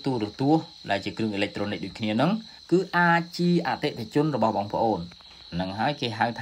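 A man speaking Khmer in continuous narration, with a faint steady high-pitched whine behind his voice.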